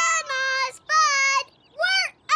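A young girl's cartoon voice singing a short, bright phrase of held notes: two long notes, then a third beginning near the end.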